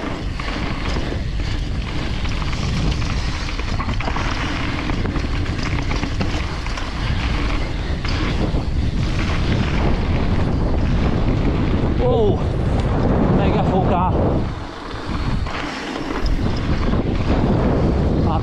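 Wind buffeting an action camera's microphone while a mountain bike rolls fast over a dirt trail, its tyres and suspension making a steady rushing rumble. About twelve seconds in there is a brief wavering pitched sound, and around fifteen seconds in the noise drops for a moment.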